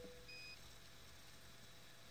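Near silence: room tone, with a faint, brief high-pitched beep about a third of a second in and a faint steady low hum that stops before the first second is out.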